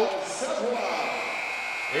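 Arena's end-of-game buzzer sounding one steady high tone from a little before halfway, over crowd noise in the rink: the clock has run out and the game is over.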